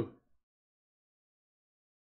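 The last syllable of a man's spoken words fades out in the first moment, then dead silence with no sound at all.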